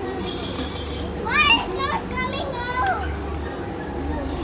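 Children's high-pitched voices, excited calls and squeals rising and falling, over a steady background hum and crowd din.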